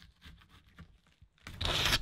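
Kitchen knife cutting into a pomegranate on a wooden board: faint small ticks, then about one and a half seconds in a louder rasping scrape as the blade tears through the rind.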